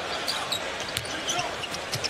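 Steady arena crowd noise with a basketball bouncing on the hardwood court; the sharpest knock comes about a second in.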